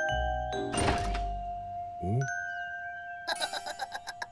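Cartoon music score with comic sound effects: a held note under a short burst of noise about a second in, a quick rising glide near the middle, and a fast run of bright struck notes near the end.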